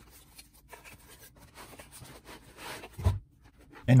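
Cardboard rubbing and scraping as a plastic storage case is slid out of its cardboard box. The scrape grows louder about two and a half seconds in, followed by a short dull knock.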